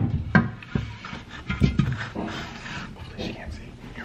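Close handling noise of a camera being set in place and an orange elephant figure being moved up against it: a sharp knock right at the start, another about half a second in, and one more near the middle, with rubbing and rustling between.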